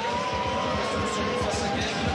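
Football stadium crowd noise from the stands, with a steady held tone over it for about the first second and a half.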